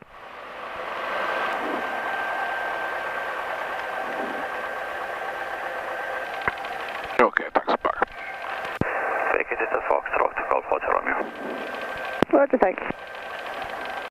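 Aircraft headset radio/intercom channel: a steady narrow-band hiss with a thin constant whine, then short bursts of clipped radio voice about halfway through and again near the end.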